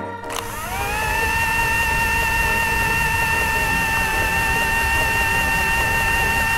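Microwave oven running, as a cartoon sound effect: a whirring hum that winds up in pitch over the first second, then holds a steady whine.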